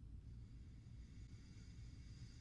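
Near silence: a faint, long sniff through the nose as a boxed soap bar is smelled, starting just after the start.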